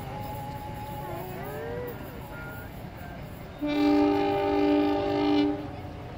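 A train horn sounds one long blast of about two seconds, a little past halfway, a steady tone of several notes at once. Under it runs the low rumble of a passenger train rolling away along the track.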